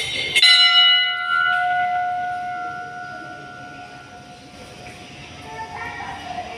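Brass Hindu temple bell struck once, ringing on with several clear tones that fade slowly over about four seconds.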